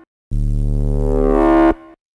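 Distorted drum-and-bass synth bass from Serum playing one held note over a deep sub, starting after a short silence. Its upper harmonics swell brighter and louder as an LFO raises an oscillator's level into the distortion, and the note cuts off sharply near the end.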